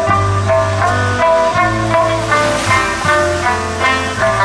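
Live band playing an instrumental passage: strummed acoustic guitar and electric guitar over a moving bass line and drums, with no singing.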